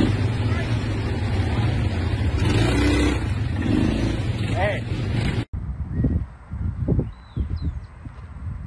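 Heavy wind and rumble buffeting a phone microphone while riding outdoors, with a voice breaking through briefly. It cuts off suddenly about five and a half seconds in to a much quieter outdoor scene with a few soft thuds and a couple of short high chirps.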